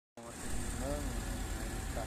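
A low, steady engine-like rumble with a few brief fragments of voices.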